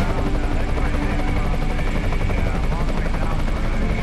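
Helicopter in flight, heard close up from a camera mounted on its fuselage: loud, steady rotor and engine noise with a thin steady high whine over it.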